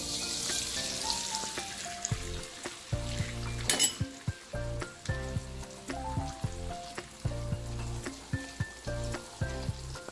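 Roti dough frying in oil in a steel wok. The sizzle is strongest in the first couple of seconds, then a metal spoon and spatula click and scrape against the wok again and again. Background music with a melody and bass plays over it.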